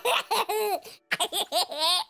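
Cartoon characters laughing in childlike voices, a run of short bursts of laughter that rise and fall in pitch.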